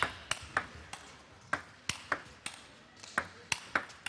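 Table tennis rally: a run of sharp clicks as the ball bounces on the table and is struck back and forth with rubber-faced bats, about ten clicks spaced a fraction of a second apart.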